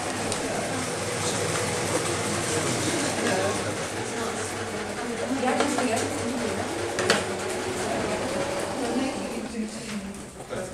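Indistinct chatter of several people in a room, with an electric sewing machine stitching and its motor humming steadily underneath.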